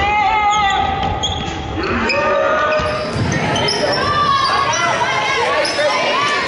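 A basketball bouncing on a hardwood gym court amid players' and spectators' voices, echoing in the large hall.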